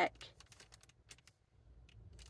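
Faint, irregular light clicks and taps from a paper sale flyer and a plastic highlighter being handled.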